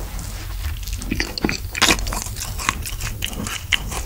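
Close-up mouth sounds of biting into and chewing an Orion Choco Pie, a chocolate-coated cake sandwich with a marshmallow filling: irregular soft clicks and smacks, the sharpest a little under two seconds in.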